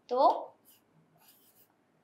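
Faint scratching of a stylus writing a letter on an interactive display screen, a few short strokes.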